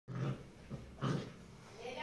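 Tibetan mastiff dogs making short grunts while the puppy plays with its mother, two main bursts about a second apart.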